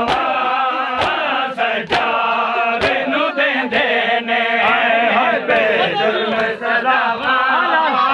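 Large group of men chanting a Shia mourning nauha in unison while doing matam, beating their chests with their palms: sharp slaps keep a beat about once a second, loosening later.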